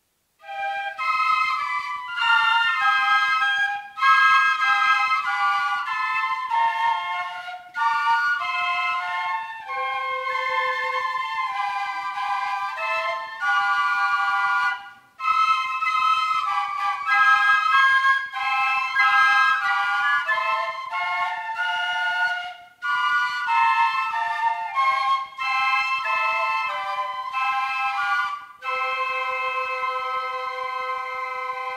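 Ensemble of small transverse flutes playing a melody together in phrases, starting about half a second in, with brief breaks about halfway through and again a little later.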